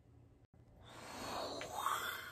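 A breathy, wind-like whoosh that swells up over about a second, after a brief cut-out to silence about halfway through.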